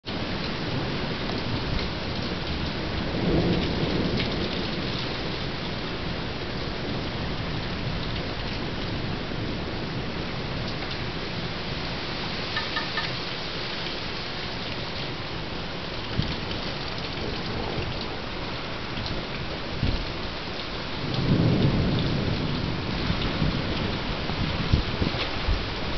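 Steady rain falling during a thunderstorm, with thunder rumbling twice: once about three seconds in, and again, louder, near the end.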